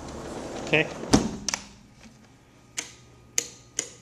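A door bumps shut just past one second in with a loud knock and a smaller second knock, cutting off the outdoor background, followed by four sharp clicks spaced about half a second apart, like footsteps on a hard floor.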